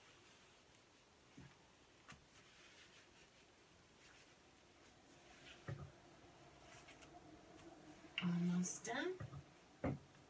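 Newspaper rubbed and rustled over mirror glass, faint, with a few soft knocks. About eight seconds in comes a short, louder hum of a woman's voice.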